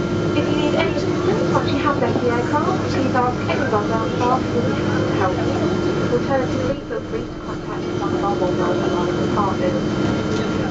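Steady drone inside the cabin of a Boeing 777 taxiing with its GE90 turbofans near idle, under indistinct chatter of passengers' voices. A low part of the hum cuts out about two-thirds of the way through.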